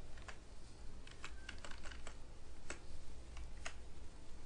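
Computer keyboard typing: a quick, irregular run of key presses about a second in, with a few single keystrokes after it.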